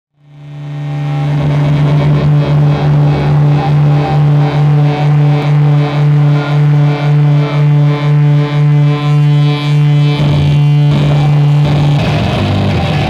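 A loud, sustained low amplified drone from a live metal band, fading in over the first second and pulsing about twice a second; the pulsing stops about ten seconds in, just before the full band with drums comes in.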